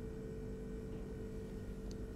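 Faint ambient background music holding one steady, sustained tone.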